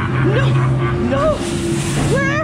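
A person's voice giving two short cries that rise and fall in pitch, over a steady low mechanical hum.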